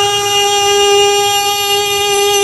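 A reciter's voice holding one long, steady chanted note, with melodic pitch turns just before and after it: the drawn-out melodic close of a Qur'an recitation.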